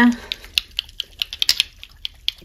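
Small glass dropper bottles of NYX Total Control Pro drop foundation being shaken in the hands, clicking and clinking against one another in a quick, irregular run of light ticks.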